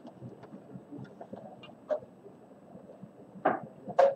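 Faint scattered taps and rustles of a plastic set square being repositioned on paper.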